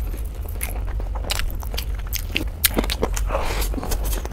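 Close-miked eating sounds of a person biting and chewing a mouthful of chicken and biryani rice eaten by hand: irregular wet clicks and smacks. A steady low hum runs underneath.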